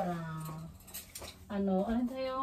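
Two drawn-out wordless vocal sounds: the first falls in pitch and then holds steady, and the second comes about a second and a half in at a steady pitch.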